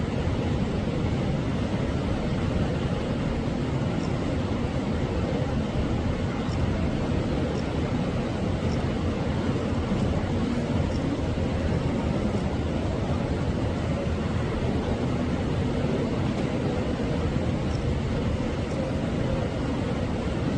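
Steady low rumbling background noise, even throughout, with a few faint high ticks.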